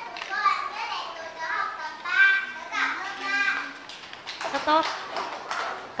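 Young children's voices speaking aloud in Vietnamese, with a woman's single short word near the end and a few sharp taps around the same time.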